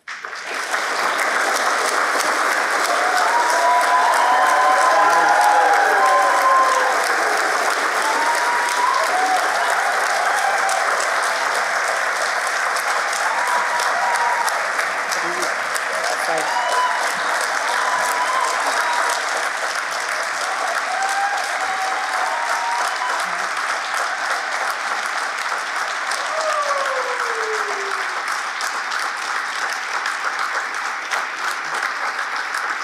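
Large audience giving a standing ovation: dense, sustained clapping that starts suddenly, with scattered whoops and calls rising above it.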